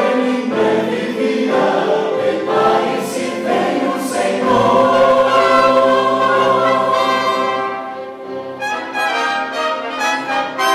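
Church choir singing a Christmas cantata number in sustained chords, with a male vocal quartet singing at the front into handheld microphones. The singing dips briefly about eight seconds in, then picks up again.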